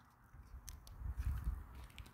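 Stroller wheels rolling over asphalt with a low rumble and walking footsteps, with a few faint clicks.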